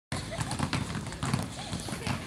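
Many basketballs dribbled at once on a concrete court: a continuous, irregular stream of overlapping bounces, with students' voices behind.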